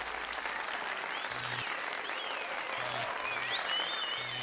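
Applause running steadily through, with a few high, wavering tones over it in the second half.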